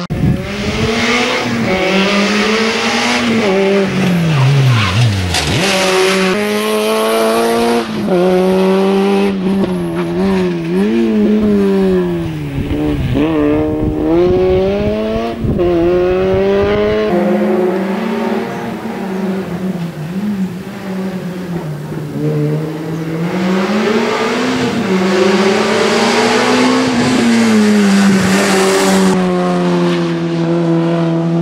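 Peugeot 106 N1600 race car's four-cylinder engine driven hard through a slalom. It revs up, drops back and revs up again over and over as the driver accelerates, shifts and brakes through the turns.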